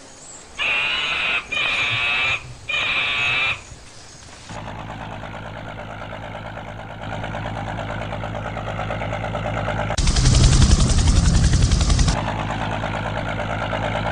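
A riverboat's engine runs steadily and grows louder, loudest about ten to twelve seconds in, then eases back. Before it, in the first few seconds, there are three sustained high-pitched calls, each under a second long.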